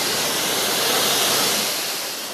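Pressure washer spray hissing steadily as it rinses a car's wing and bonnet, the water spattering off the paint.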